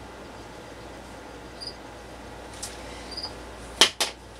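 A shirt on a plastic clothes hanger being handled and set aside: faint room hiss with a few soft ticks and small squeaks, then one sharp click near the end.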